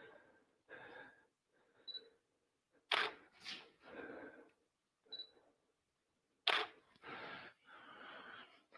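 Faint DSLR camera shutter releases: two sharp clicks about three and a half seconds apart, with softer clicks and handling sounds between them.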